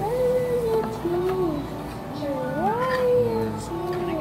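A boy singing a wordless melody, his voice sliding up and down between notes in short phrases, with one high upward swoop about three seconds in.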